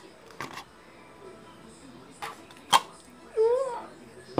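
A few sharp clicks of hard plastic bowls and lids being handled, then near the end a short hummed vocal sound that rises and falls.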